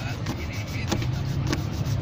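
Low, steady rumble of a motor vehicle on the street, growing louder near the end, with two sharp clicks about a second and a second and a half in.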